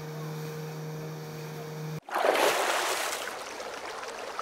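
Outboard motors running steadily at speed, a constant low hum. About halfway through, it gives way to a sudden loud rush of water-like noise that slowly fades.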